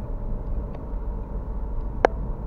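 Steady road and engine noise inside a moving car's cabin, with a couple of faint light clicks or rattles.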